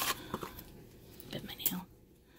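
A woman's soft, wordless voice sounds, with a few light clicks and rustles of a small cardboard toy box and a paper card being handled.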